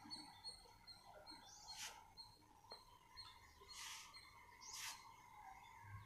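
Near silence: faint outdoor background, with three brief faint hissy sounds about two, four and five seconds in.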